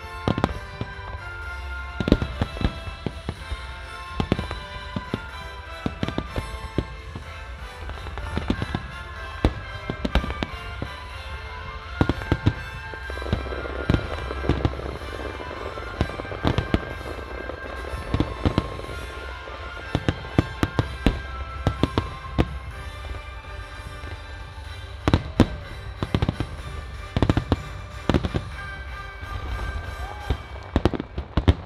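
Fireworks display by Marutamaya: aerial shells bursting one after another at irregular intervals, sharp reports over a low rumble, with music playing throughout. About halfway through there is a stretch of dense crackling.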